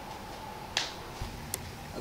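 A few short, sharp clicks and a low thump over a faint steady background: the loudest click comes about three quarters of a second in, a thump just after a second, and a lighter tick shortly after.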